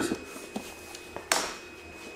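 Light handling sounds on a tabletop: a couple of faint clicks, then one sharper tap about a second and a half in.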